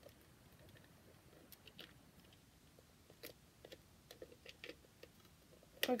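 Faint, scattered small clicks and scrapes of a battery being fumbled against the plastic battery compartment of a small rainbow night light, failing to seat because it is being put in the wrong way round.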